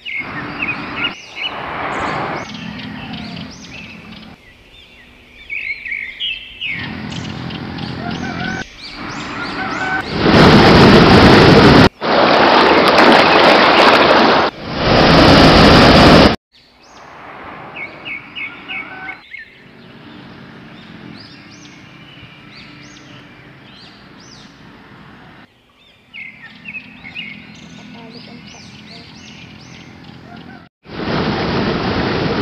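Birds chirping in repeated short calls over a quiet outdoor background. About ten seconds in, a small waterfall's loud, steady rush of water crashing into its pool takes over for about six seconds, then cuts off suddenly and the chirping returns.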